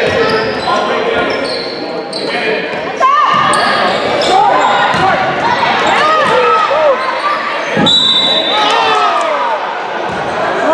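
Basketball game play on a hardwood gym floor: the ball bouncing, sneakers squeaking in short rising and falling chirps from about three seconds in, and voices calling out, all echoing in the hall.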